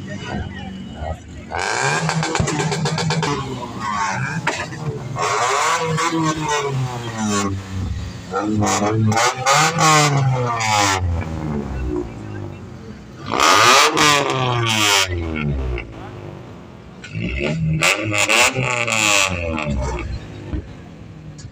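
Modified cars' engines revving as they drive slowly past, in about five loud surges whose pitch rises and falls, with crowd voices shouting.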